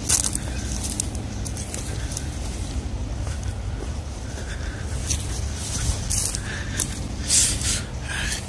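Footsteps pushing through dry grass and brush: irregular crackling and swishing of stems, with a steady low rumble on the microphone.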